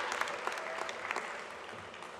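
Audience applause dying away, thinning to scattered individual claps.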